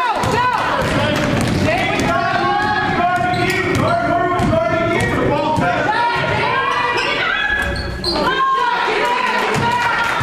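Basketball being dribbled and bouncing on a gym floor, with many overlapping voices of spectators and players shouting, echoing in a large hall.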